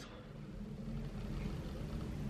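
Jet aircraft passing over, heard from inside the house as a low, steady rumble that slowly grows louder.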